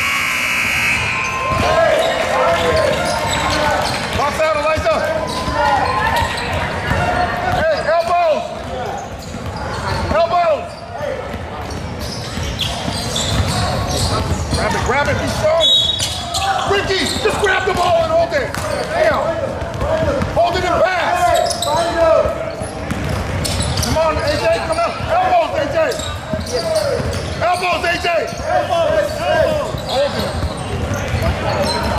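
Basketball game on a hardwood gym court: the ball bouncing and voices calling out in a large echoing hall. A buzzer sounds at the very start and cuts off about a second in.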